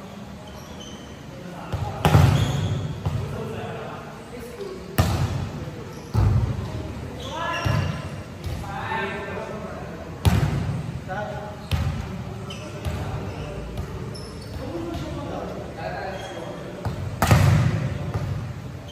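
Volleyball being hit during a rally in an echoing gymnasium: about six sharp smacks of the ball, the loudest near the start and near the end, with players' voices calling out between them.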